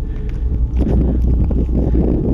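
Wind buffeting the camera's microphone: a steady low rumble that turns rougher and a little louder about three quarters of a second in.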